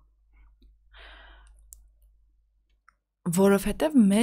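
A short pause in a conversation: a soft breathy exhale about a second in and a faint click, then a woman's speech resumes just after three seconds.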